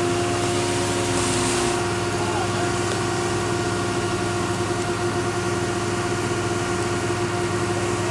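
An engine idling steadily: a constant hum with a fixed pitch that does not rise or fall. There is a brief hiss about a second in.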